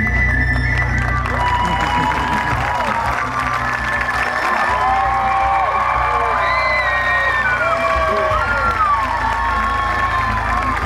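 Music playing over a PA, with an audience cheering and shouting from about a second and a half in. Many voices rise and fall at once.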